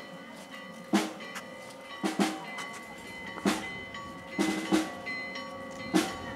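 Marching-band drums beating a slow processional cadence: a single hit or a quick pair of hits about every second and a bit, over faint steady ringing tones.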